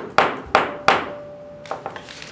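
Three sharp knocks about a third of a second apart, each ringing briefly, followed by a few lighter clicks near the end.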